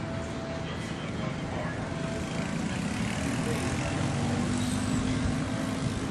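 A motor vehicle's engine running steadily, growing louder about halfway through and holding until near the end, over outdoor background noise.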